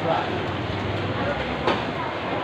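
Cleaver chopping through stingray flesh on a chopping block, one sharp chop about three-quarters of the way in, against a steady hum and background voices.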